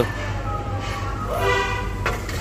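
A steady low mechanical hum with an even hiss, and a faint pitched, horn-like tone rising in about a second in and fading out near the end.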